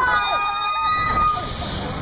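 Rameses Revenge, a Huss Top Spin ride, whining as its gondola swings round: a high whine falling slightly in pitch and fading out past the middle. Riders' screams mix in at the start.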